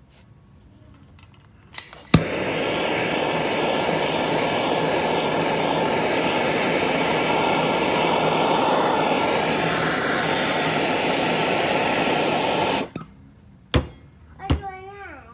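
Bernzomatic hand torch on a MAP gas cylinder lit with a click about two seconds in, then burning with a loud, steady hiss for about ten seconds before it is shut off abruptly. The flame is heating a seized nitro engine block to free its bearings. A single click follows near the end.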